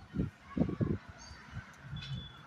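A house crow at close range making several short, low sounds in quick succession in the first second, then quieter.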